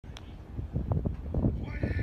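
Outdoor field recording with wind rumbling on the phone microphone, and a distant shouted call that starts about one and a half seconds in.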